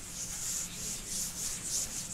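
Whiteboard eraser rubbing across a whiteboard in repeated wiping strokes, a hiss that swells and fades with each stroke.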